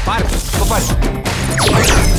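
Rapid, sharp percussive hits from a film soundtrack, with steep sweeping sounds near the end.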